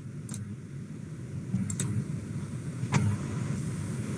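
Computer mouse clicks: a few short sharp clicks, two of them in a quick pair near the middle, over a low steady hum.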